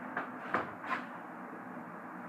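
A few faint, light knocks and clicks, about three in the first second, from round tins of dip tobacco being handled and swapped over.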